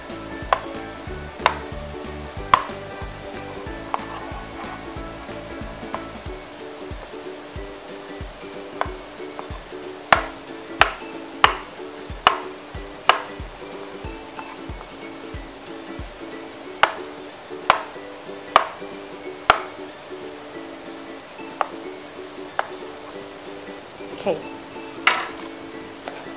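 A kitchen knife cutting through a block of jelly and knocking on a plastic cutting board: about twenty sharp, irregular taps, some in quick runs about a second apart, over steady background music.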